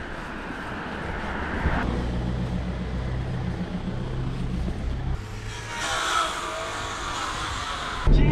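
Street traffic: a nearby motor vehicle's engine giving a steady low hum over a background of traffic noise, with a swell of passing-vehicle noise about six seconds in.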